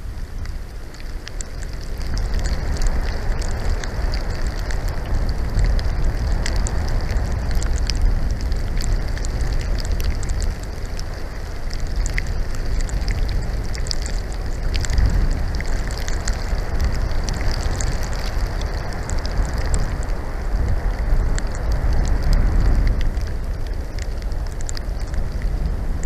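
Storm wind gusting over the microphone in a low, steady rumble that picks up about two seconds in, with a fine scattered patter of blowing snow.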